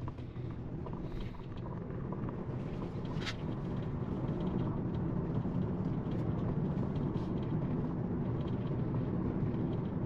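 Tyre and road noise inside a Tesla's cabin as the electric car drives along: a steady low rumble that grows a little louder as the car speeds up.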